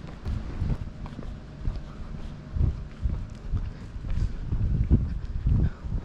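Footsteps of a person walking on a paved street, heard as irregular low thuds through the body-held camera, about one every half second to a second.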